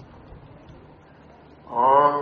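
A pause in a man's speech, holding only faint, even background noise; his voice comes back near the end on a drawn-out syllable.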